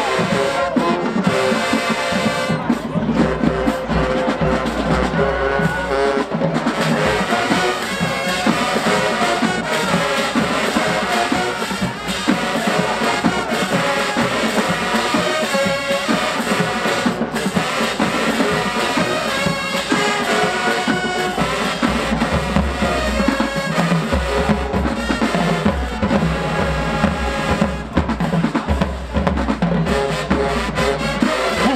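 Marching band playing at full volume: a brass section with sousaphones over a drumline of snare and bass drums, with heavy bass hits in stretches near the start and in the last third.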